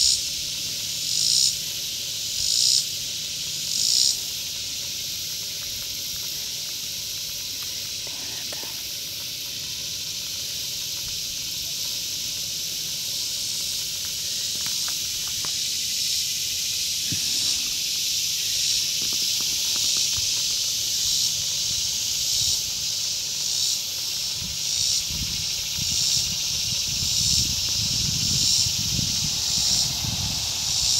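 Cicadas singing in chorus: a loud, steady high-pitched buzz that swells in regular pulses about every second and a half at first, holds steady for a stretch, then pulses again a little faster through the second half. A low rumble comes in near the end.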